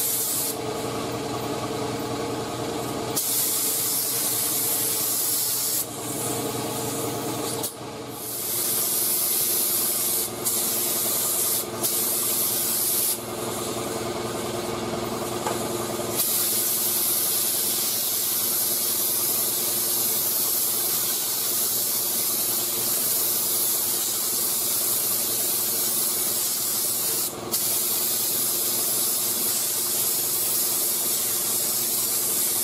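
Compressed-air paint spray gun (3M Performance gun, 1.4 mm tip at about 15–19 psi) hissing steadily as it sprays automotive paint. The hiss drops out briefly a few times as the trigger is let off between passes, over a steady low hum.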